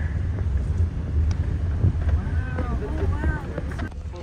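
Steady low rumble of wind buffeting the phone's microphone and road noise from a moving car, with faint voices over it about halfway through.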